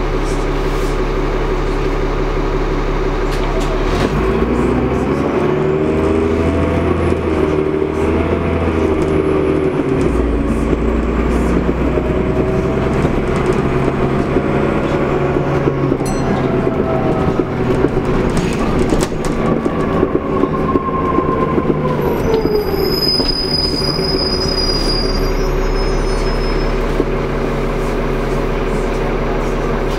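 Onboard a Transbus Trident double-decker bus: the diesel engine and driveline run steadily under way, with a transmission whine that rises and falls as the bus pulls and changes gear. Near the end, as it slows, a brief high-pitched squeal sounds.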